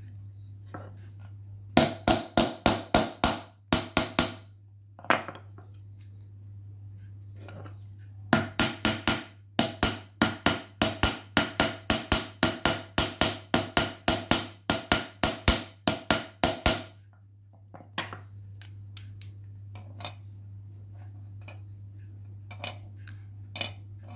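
Small hammer tapping a thin metal pin into a 3D-printed plastic toy: quick light blows about four a second, a run of about ten, a pause, then a longer run of some thirty, followed by a few scattered lighter taps. A steady low hum runs underneath.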